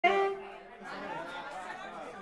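Bar-room chatter, several voices talking over one another, after a short loud held pitched note right at the start.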